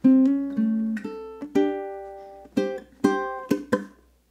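Low-G ukulele played slowly in a bluesy fingerpicked riff: single plucked notes and two-note double-stops ringing out one after another. It ends with two short muted percussive strum hits.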